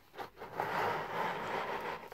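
Small miniature figures being pushed together into a pile across a table surface. A few light clicks are followed by a steady scrape lasting about a second and a half.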